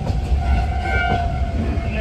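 Heavy low running rumble inside a diesel railcar. Over it, a steady pitched horn-like tone sounds for about a second and a half, starting just after the start.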